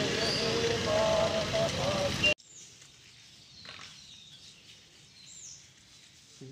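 A group of people singing together with long held notes, cut off abruptly a little over two seconds in. After it, faint bird chirps.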